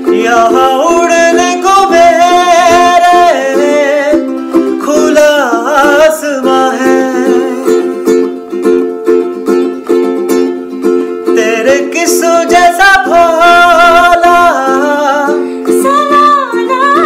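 Ukulele strummed in steady chords under a singing voice, the sung line pausing briefly about four seconds in and thinning out for a few seconds in the middle before returning.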